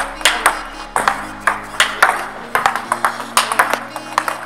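Table tennis balls struck in quick succession in a multiball drill: sharp clicks of the ball off bats and the table, several a second, over background music.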